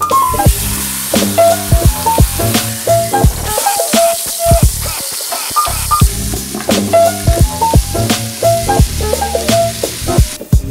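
Chicken sizzling as it sears in hot oil in a pressure cooker's stainless inner pot. The hiss swells near the middle, under background music with drums.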